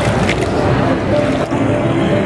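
Water churning and splashing as a red tethered underwater drone runs its thrusters at the pool surface, under a steady din of voices and music from a busy exhibition hall.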